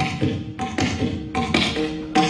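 Carnatic hand-drum music, likely a mridangam: quick strokes at about four a second, each with a ringing pitched tone.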